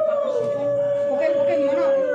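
Conch shell (shankha) blown in one long steady note that dips slightly in pitch and stops near the end, with women talking underneath.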